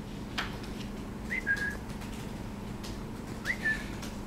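A person whistling twice, about two seconds apart. Each whistle is a quick upward slide into a short held note, like a whistle to get someone's attention. A low steady room hum runs underneath.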